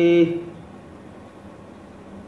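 A man's chanted Sanskrit recitation ends on a held, steady note a fraction of a second in, leaving only a faint steady hiss of room tone.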